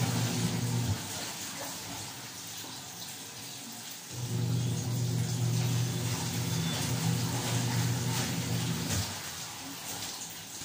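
Water sloshing and splashing in a plastic basin as clothes are hand-scrubbed and wrung. Under it, a steady low hum stops about a second in, comes back after about four seconds and stops again near the end.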